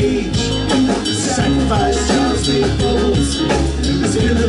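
Live rock band playing an instrumental passage, without vocals: electric guitar, keyboard and drum kit over a steady low bass line, with a regular drum beat.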